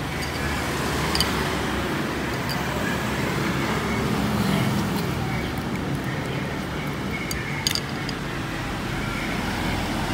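Steady hum of passing street traffic, with a few sharp clicks.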